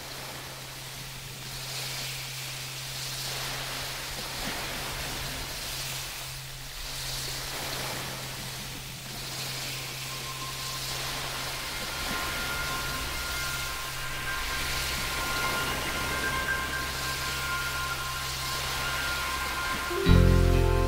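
Underwater recording from a scuba diver's camera: a steady hiss that swells and fades every couple of seconds, typical of the diver breathing on a regulator, over a steady low hum. A few faint steady tones join from about halfway through.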